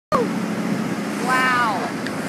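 Steady wind and boat-motor noise with a low hum. About a second and a half in, a person lets out one long excited cry that rises and then falls in pitch.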